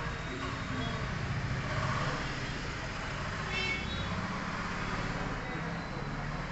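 Steady low rumble of a moving vehicle heard from inside, with faint background voices and a brief high tone about three and a half seconds in.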